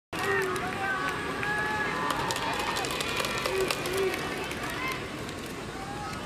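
Several distant voices calling out at once across a baseball field, over open stadium ambience, with faint scattered clicks.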